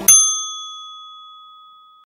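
A single bright, bell-like ding, struck once right at the start, then ringing out and fading slowly over about two seconds.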